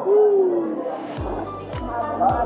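A single short hoot-like tone gliding downward in pitch, lasting about half a second and the loudest thing here, followed by background music with a steady beat.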